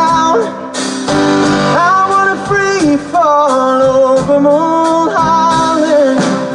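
A live band playing a song, with a man singing long held notes over the instrumental accompaniment.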